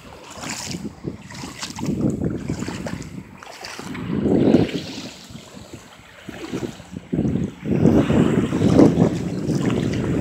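Wind buffeting a phone's microphone in gusts that swell and fade every second or two, the loudest near the middle and end, over small waves lapping in shallow water.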